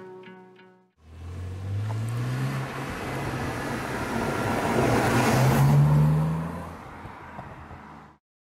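BMW Z4 coupe's straight-six engine accelerating as the car drives past. The engine note rises, dips, then climbs again as the car nears, is loudest about five to six seconds in, and fades as it moves away.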